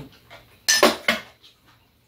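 Metal spoons clinking against bowls and dishes at a meal: a quick run of three clinks just before the one-second mark.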